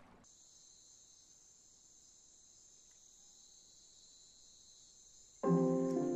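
Faint, steady, high-pitched insect chorus. About five and a half seconds in, a loud held music chord comes in over it.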